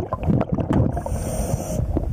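Underwater noise picked up through a diver's camera housing: a continuous low rumble of water and handling, with scattered small clicks and knocks. A hiss joins in for a moment just after the middle.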